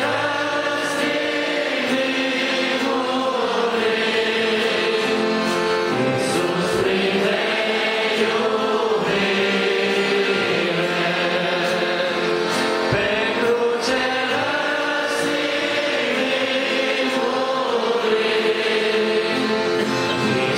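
A congregation singing a hymn together, many voices holding long sustained notes.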